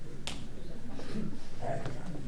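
A single sharp click or snap about a quarter second in, over faint voices.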